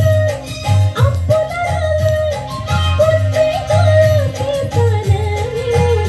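A woman singing a slow melody with long held, sliding notes into a microphone over a backing track with a steady bass beat; her line steps down lower near the end.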